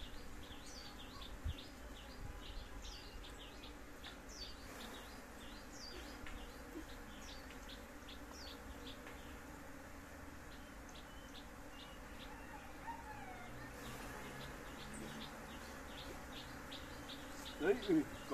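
A colony of native Asian honeybees buzzing steadily around an opened wooden box hive as its combs are handled. Small birds chirp over the buzzing throughout.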